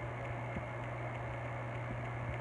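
Steady low electrical hum with a faint even hiss, no distinct events.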